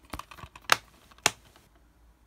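Plastic Blu-ray case handled in the hands: a few sharp plastic clicks and taps in quick succession, the loudest a little under a second in and one more at about a second and a quarter, then only faint rustling.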